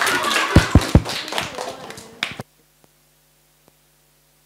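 Audience of children applauding, with voices mixed in, dying away over about two seconds, marked by three low thumps close together about half a second in. The sound then cuts off abruptly to near silence with a faint hum.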